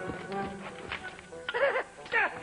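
Battle-scene soundtrack: background music under shouting and horse neighing, the cries rising and falling in pitch, the clearest one about one and a half seconds in.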